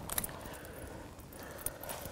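Faint handling sounds of a hook being worked out of a salmon in a landing net: a few light clicks just after the start and another near the end, over a low steady hiss.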